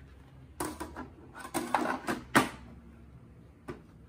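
Hard plastic knocking and clattering as the grey paper-tray cover of an HP Neverstop Laser 1000w printer is handled and fitted over the input tray: a run of sharp knocks from about half a second to two and a half seconds in, then one more click near the end.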